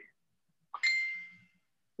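A single electronic ding, like a computer notification chime, sounding about three quarters of a second in and ringing out for under a second.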